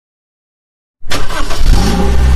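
A car engine starting about a second in, then running and revving.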